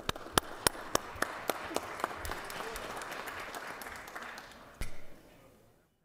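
A room full of people applauding, with a few sharp, loud claps close to the microphone at the start. The clapping fades out over about five seconds.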